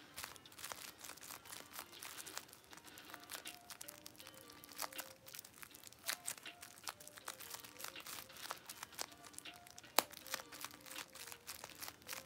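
Bubble wrap being popped and crinkled: irregular small pops and crackles, with one sharper pop about ten seconds in, over faint background music.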